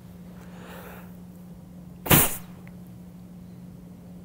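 A single sharp puff of breath through a Cold Steel blowgun about two seconds in, firing a dart, after a faint breath in.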